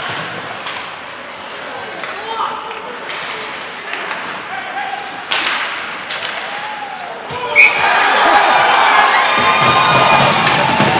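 Ice hockey play in an arena: stick and puck knocks on the ice, with a sharp crack a little past the middle. Near the end a brief high tone sounds and the arena gets much louder, with crowd cheering and music, as after a goal.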